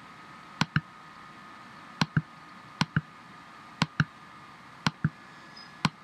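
Computer mouse button clicking in quick pairs, each a press and release, six times, with about a second between pairs, as on-screen camera buttons are clicked.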